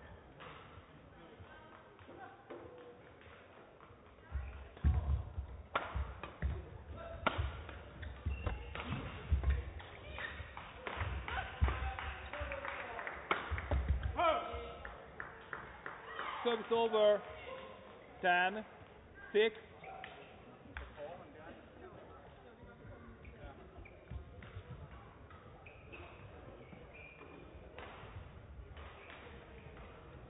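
Badminton rally: rackets striking the shuttlecock back and forth and players' feet thudding on the court floor for about ten seconds, starting about four seconds in. Once the point is over, a few short shouts from the players, then quiet hall sound.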